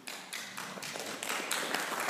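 Hand clapping that starts with a few separate claps and builds into a denser, louder round of applause from a small group.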